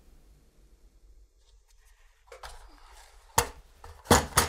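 Small screwdriver working stiff screws out of a metal drive carrier: faint scraping of the bit in the screw heads, then one sharp click about three and a half seconds in.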